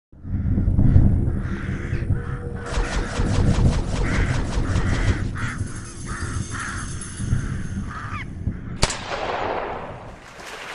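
Channel-intro sound effects: a crow cawing over and over above a deep rumbling backing, closing just before the end with a sharp hit and a falling whoosh.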